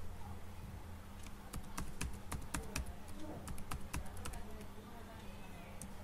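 Computer keyboard keys being typed: about a dozen quick, irregular keystrokes in a burst lasting about three seconds, entering a document password, over a steady low hum.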